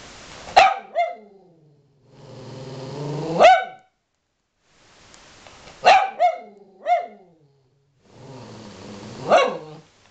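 Cavalier King Charles spaniel growling and barking: four bouts in which a low rumbling growl swells into short sharp barks, about seven barks in all, with brief silences between bouts.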